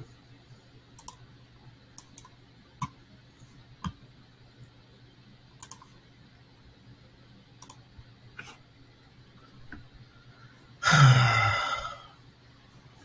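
Scattered computer mouse clicks, then near the end a loud sigh of about a second, falling in pitch.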